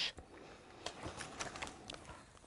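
Quiet room with a few faint clicks and light rustles of paper as a spiral notebook and loose sheets are handled.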